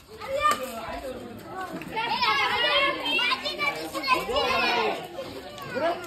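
A group of children shouting and calling out at play, several high voices overlapping. They are loudest from about two seconds in.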